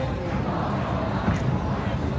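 Spectator crowd at a kabaddi match: a dense din of voices, with dull low thuds mixed in.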